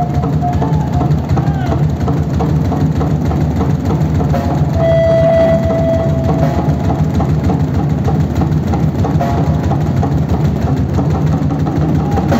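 Live percussion from a drum kit and doira (Uzbek frame drum) keeping a fast, steady rhythm, with voices over it. A single held high tone sounds about five seconds in.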